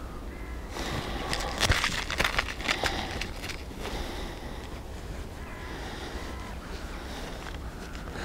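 Rustling undergrowth and handling noises as an angler moves in dense brush with a rod and centre-pin reel: irregular crackles and scuffs, busiest in the first half, over a low steady rumble.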